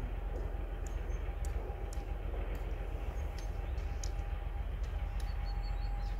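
ST44 (Soviet-built M62) diesel locomotive approaching in the distance, its two-stroke V12 diesel giving a steady low rumble with a thin, steady whine above it.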